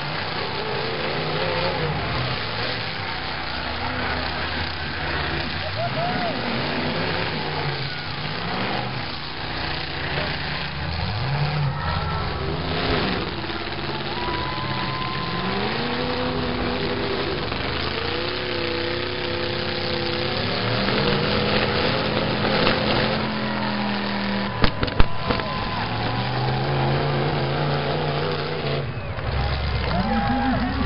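Demolition derby cars' engines revving up and falling back, several at once, over continuous arena noise. A few sharp bangs come close together about twenty-five seconds in.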